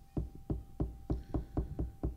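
A hand tapping on a tabletop, picked up through the table-mounted microphone stand as dull thuds, about four a second and slightly uneven.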